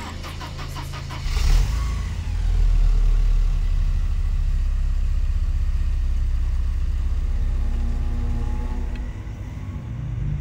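A car engine cranking briefly, catching with a short rev about a second and a half in, then running with a steady low rumble as the car pulls away. The sound eases a little near the end.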